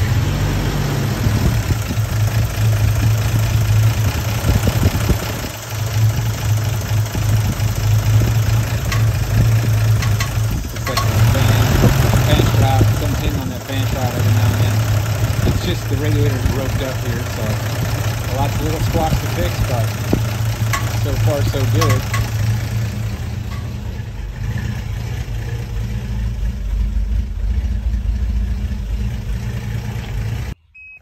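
The 1988 Toyota FJ62 Land Cruiser's 3F-E inline-six running rough after years of sitting, its steady idle dipping and swelling now and then. The owner traces the rough running to the airflow sensor.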